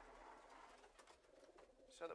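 Near silence: quiet room tone in a pigeon loft, with faint cooing from domestic pigeons.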